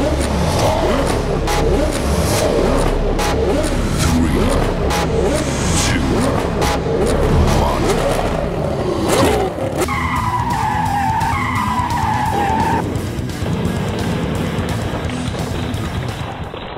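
Dubbed race-car sound effects over background music: engines revving up and down in repeated glides, with tyre squeal. A loud peak comes near the middle, followed by quieter falling whines.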